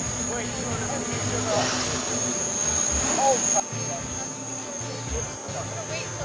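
Small electric Quadlugs quadcopter in flight, its motors and propellers giving a steady high-pitched whine that turns quieter about three and a half seconds in. Laughter and brief voices over it.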